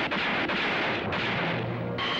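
Movie-soundtrack gunfire: several loud revolver shots or blasts about half a second apart, with dramatic music under them.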